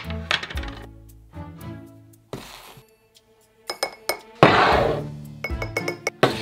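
Metal measuring spoons clinking against a glass bowl and spice jars, with two longer rustling scrapes about two and a half and four and a half seconds in, the second the loudest, over background music.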